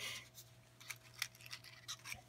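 Faint scattered clicks and scrapes of a small cardboard matchbox being handled and slid open and a wooden match being picked out.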